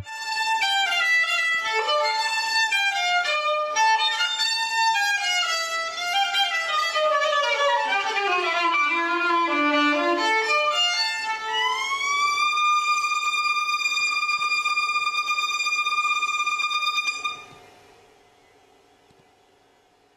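Violin playing fast running passages that wander downward, then sliding up into a long held high note. The note lasts about five seconds, is cut off about three seconds before the end, and its echo dies away to near silence.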